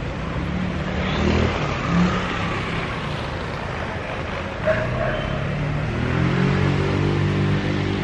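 Street traffic: a motor vehicle's engine running close by over a steady traffic hiss, its low hum growing stronger in the second half.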